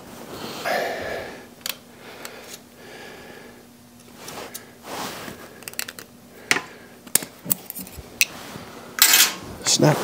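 Steel hand tools working a snap ring off a bearing on the tractor transmission's input shaft: scattered sharp metallic clicks and scrapes, with a louder clatter about nine seconds in.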